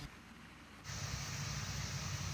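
Very quiet at first, then a little under a second in a steady background hiss with a low hum comes in and holds.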